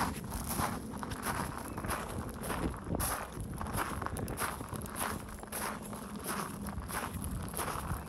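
Footsteps crunching on a gravel path at a steady walking pace, about two steps a second.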